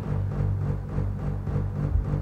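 Background music: low, held notes with a slow pulse and a dark, tense feel.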